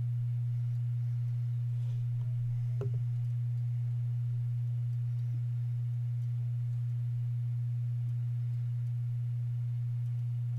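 A steady, unchanging low hum, a single pure tone, with a faint click about three seconds in.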